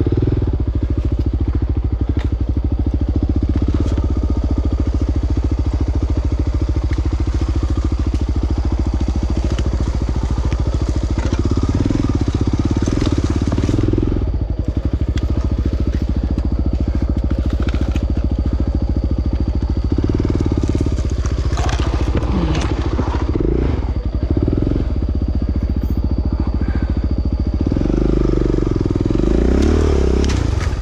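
Dirt bike engine running at low revs through the whole stretch, with the revs rising briefly a few times in the second half as the throttle is opened.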